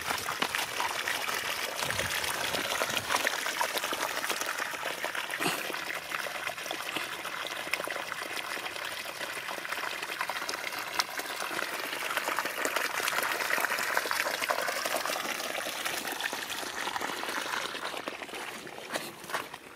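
Water pouring steadily from the open end of a PVC pipe and splashing into a shallow puddle: the continuous outflow of a siphon system drawing water from a river.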